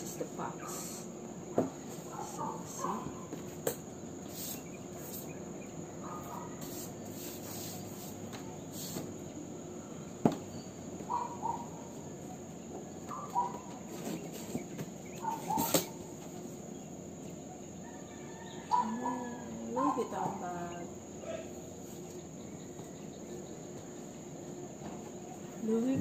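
A cardboard gift box and its contents being handled and closed, with scattered rustles and a few sharp taps and clicks. Behind it runs a steady high-pitched drone.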